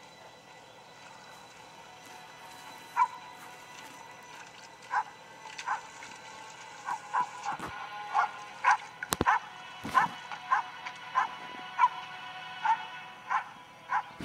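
A dog barking in short single barks, sparse at first and then about one to two a second from about seven seconds in, over a low sustained film score, played through a portable DVD player's small speaker. A sharp knock comes about nine seconds in.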